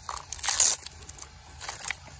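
Rustling and scraping handling noise as a LiPo battery pack is freed from its strap and slid out of an RC car's battery tray: a short rasp about half a second in and a smaller one near the end.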